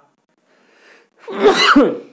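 A person sneezing once: a faint breath in, then a single loud sneeze in the second half.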